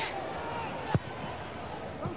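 Steady football stadium crowd noise, with one sharp thud of a football being kicked about a second in.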